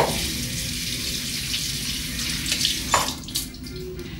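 Bathroom sink tap running, water splashing over hands into the basin. It comes on suddenly, and a sharp knock comes just before the water stops about three seconds in.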